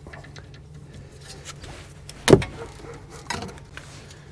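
A ratchet on a brake caliper's 14 mm mounting bolt: a few faint clicks, then a single sharp crack a little over two seconds in as the bolt breaks loose.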